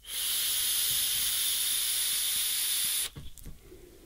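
A draw of about three seconds on an iJoy Capo 216 squonk mod and its rebuildable atomiser: a steady hiss of air pulled through the atomiser as the stainless steel coils vaporise e-liquid, stopping abruptly, with a few faint clicks after. The coils are fired in temperature-control mode at 75 W and 477°F, a setting that gives a weak hit.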